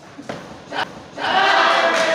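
A brief knock just under a second in, then loud, sustained shouting voices from just over a second in, during a karate kumite exchange.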